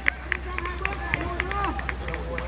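Footballers calling out and shouting to one another as they run a training game on the pitch, with short sharp clicks scattered among the voices.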